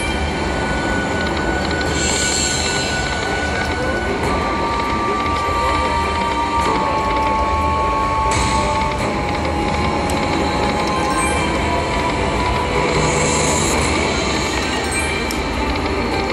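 Loud, steady casino-floor din of slot machines, with held electronic tones and music from a Walking Dead video slot as its reels spin, one spin after another.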